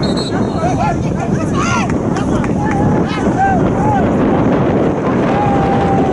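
Wind rumbling steadily on the microphone, with scattered shouts and chatter from spectators over it.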